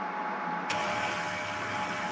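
Steady background hiss over an online call's audio, with a faint hum of thin tones. The hiss turns brighter and stronger a little over half a second in.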